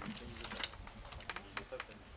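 Indistinct conversation with a run of light, irregular clicks and taps.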